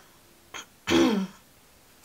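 Someone clearing their throat once, about a second in, the sound dropping in pitch, with a small mouth click just before it.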